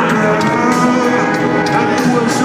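Live rock band playing in a stadium, heard from among the audience: steady drums and long held sung notes.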